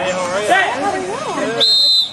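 Voices calling out, then a short, steady, high-pitched whistle near the end.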